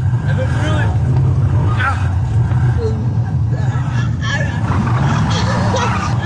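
Car engine running hard, a steady low drone heard from inside the cabin during a fast drive, with a passenger's voice over it.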